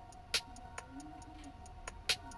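Quiet background music: soft held notes under a ticking, clock-like beat, with sharp clicks, one of them much louder than the rest.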